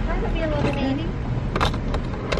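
Low, steady rumble of a car heard from inside the cabin, under quiet, indistinct talk, with a sharp click near the end.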